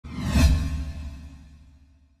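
An edited-in whoosh sound effect with a deep boom underneath, hitting about half a second in and fading away over the next second and a half.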